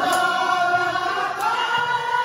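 A group of men's voices singing a devotional song together, holding long notes, with the melody bending upward about three-quarters of the way through.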